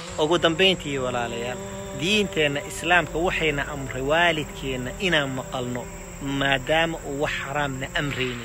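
A man talking, with a steady high-pitched chirring of crickets behind his voice.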